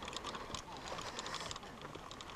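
Faint, irregular light clicks and rustling from someone walking across a grass fairway with gear, over a soft outdoor hiss.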